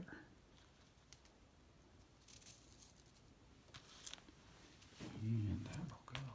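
Faint rustling and a few light clicks of small metal models and their card packaging being handled and set down on a table. A voice sounds briefly near the end.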